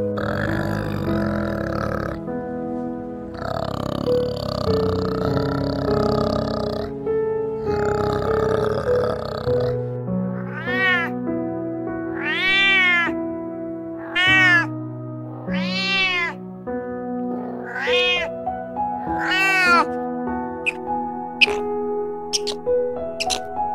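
Domestic cat meowing about six times in the second half, each meow rising and falling in pitch, over soft piano music. Before the meows come three longer, noisy animal calls.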